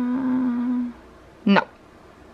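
A woman humming one long, steady 'hmm' at a single pitch while she thinks, stopping about a second in, followed by a short vocal sound about half a second later.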